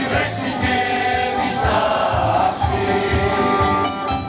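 Mixed choir of men's and women's voices singing a song in harmony, with a steady low pulse of accompaniment underneath.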